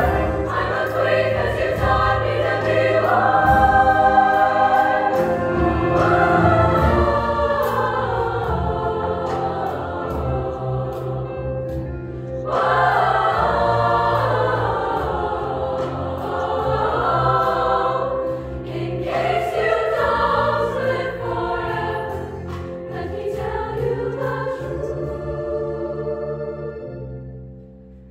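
Women's show choir singing in full voice over live band accompaniment, with a brief dip about twelve seconds in before the voices come back strong.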